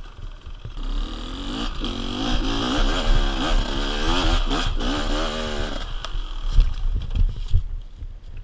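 Beta two-stroke enduro motorcycle engine revving hard under load up a steep, loose hill climb, its pitch rising and falling with the throttle for about five seconds. Near the end the revs drop away and a few sharp knocks and clatters follow.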